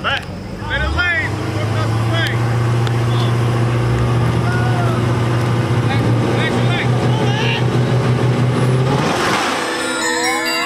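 V8 engines of Dodge Chargers staged at the start line, running at steady raised revs, with shouting voices over them. Near the end a rising whoosh leads into music.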